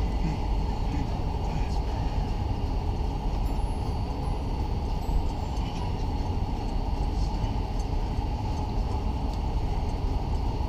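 Steady low rumble of a car's engine and tyres heard from inside the cabin as it creeps along in slow traffic.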